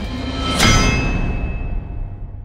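A single metallic clang about half a second in, its ringing tones fading slowly away.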